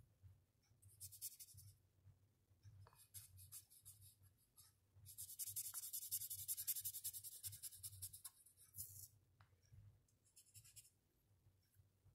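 Felt-tip marker scratching across paper in rapid back-and-forth colouring strokes, faint and coming in bouts. The longest bout runs about four seconds in the middle, with shorter ones before and after.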